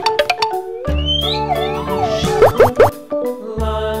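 Upbeat children's background music, with a few quick rising cartoon-style glides about halfway through.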